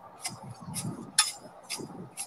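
A metal bar jabbed down into a fence-post hole of wet concrete and stones, agitating it to mix the water through. It gives a few sharp clinks at irregular spacing.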